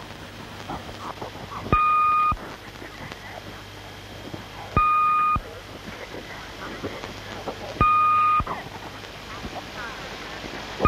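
Electronic beep, one steady tone about half a second long that cuts off sharply, sounding three times at about three-second intervals over a low murmur of faint voices.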